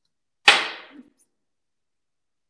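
A single sharp knock, loud and sudden, fading out within about half a second, with a faint second tap just after.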